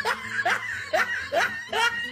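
Cartoon kitten character laughing: a run of short laugh bursts, each sliding in pitch, about two a second.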